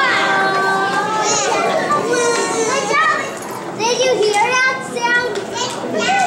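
Children's voices through stage microphones, one after another, some notes held briefly.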